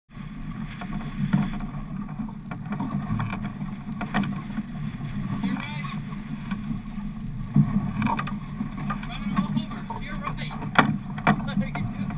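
Steady low rumble of a boat at sea, with wind buffeting the microphone and sharp knocks now and then.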